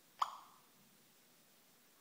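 A single short electronic chime from an iPhone's speaker, dying away within half a second. It is the voice-assistant app's cue that it has stopped listening and is working on the question.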